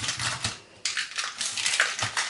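Fingers pressing and spreading crumbly cake dough over the bottom of a baking tin: a quick run of soft crunching, rubbing strokes, with a short pause a little after half a second in.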